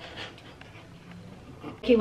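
Quiet, breathy laughter and breathing from a man and a woman, with a voice starting just before the end.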